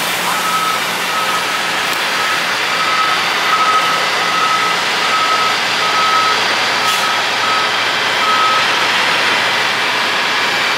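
A coach's reversing alarm beeps at an even pace, a little faster than once a second, as the diesel coach backs out of its bay, over the steady running of its engine. The beeping stops near the end.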